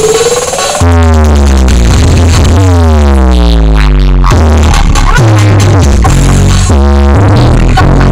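Electronic dance music played very loud through a large stacked-subwoofer sound system during a sound check. A rising tone leads into a heavy bass drop just under a second in. Falling synth sweeps follow over booming bass, which is chopped on and off near the end.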